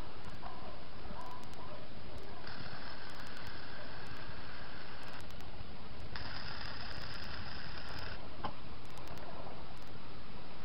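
Arc welding on a steel track plate: two welds, each a steady hiss of two to three seconds, with a short pause between them. A single sharp click follows soon after the second weld stops.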